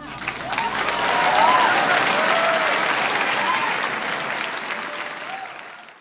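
Audience applauding and cheering, swelling over the first two seconds and fading out near the end, with a few rising and falling whistle-like glides in the crowd noise.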